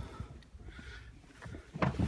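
Faint handling noise from a car's rear seat: a light rustle, then a short knock near the end as the released rear seatback is pushed to fold down.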